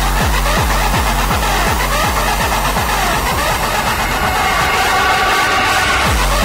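Old school hardcore gabber music: a distorted kick drum pounding about three times a second, with synth stabs above it. About halfway through the kick thins out into a short break, and a held synth chord comes in near the end.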